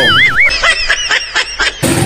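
Edited-in comedy sound effect: a warbling whistle tone for about half a second, then a quick run of high, squeaky honk-like calls that cuts off abruptly near the end.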